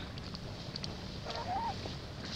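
A baby long-tailed macaque giving one short call, rising then falling in pitch, about a second and a half in, over faint scattered ticks.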